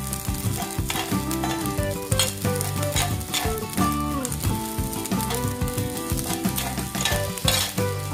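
Rice being stir-fried in a metal pan: a steady sizzle with the spatula repeatedly scraping and knocking against the pan, over background music.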